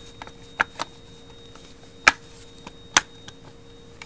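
Sharp clicks and knocks of a Remington 597 rifle's trigger assembly being fitted into its stock by hand. There are a few scattered knocks, the loudest about two seconds in and another about three seconds in.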